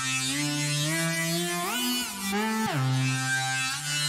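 Bitwig Studio "Driven Lead" synthesizer patch playing single buzzy notes that slide up in pitch and glide back down to the low starting note. It runs through a key-tracking EQ that boosts the fundamental and cuts a narrow band, so the tone shifts as the notes move away from the tracked key.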